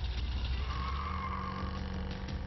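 A car engine running with a steady low sound, a higher tone briefly over it in the middle.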